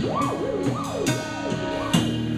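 A theremin sliding up and down in repeated wide swoops over a band playing a riff with a drum kit.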